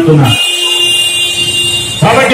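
A steady, high-pitched, horn-like tone held for about a second and a half after a man's voice stops, then cut off abruptly.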